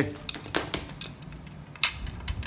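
Light clicks and ticks of the sections of a three-piece Shimano Surf Custom SF 405CX surf rod knocking against one another as they are turned in the hand, with one sharper click near the end.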